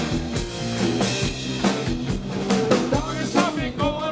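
A live rock band playing: drum kit keeping a steady beat under guitar, with a man's singing voice coming in over the band in the second half.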